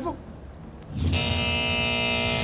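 A TV show's transition sound effect. After about a second of quiet, a steady, held electronic chord with a low pulse underneath comes in and holds.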